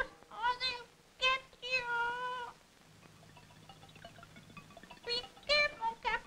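A run of high-pitched wavering cries: two short ones, then one longer held cry, followed by a lull. Three more quick cries come near the end.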